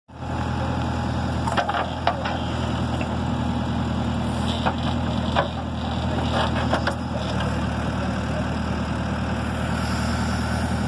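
Backhoe loader's diesel engine running steadily while the rear bucket digs into soil, with several sharp knocks and clunks from the bucket and arm between about one and a half and seven seconds in.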